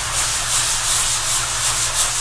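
Hand sanding with 120-grit sandpaper wrapped on a sanding block, rubbed back and forth over dried joint compound on a drywall patch, making a steady rasping hiss. The dried first coat is being sanded smooth before the next coat goes on.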